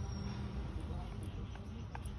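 Steady low background rumble with indistinct voices and a few faint ticks near the end.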